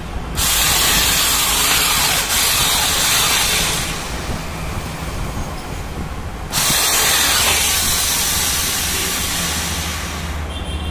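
Electric hand drill running under load, its twist bit boring through an aluminium window section. It starts up a moment in, eases off for a couple of seconds midway, then runs hard again.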